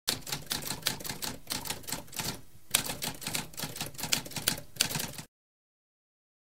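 Typewriter keys typing in a rapid run of sharp clacks, pausing briefly about halfway, then stopping abruptly a little after five seconds in.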